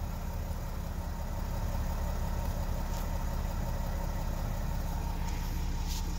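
Mercedes-Benz Sprinter van's engine idling steadily, heard from inside the cab as a low, even hum.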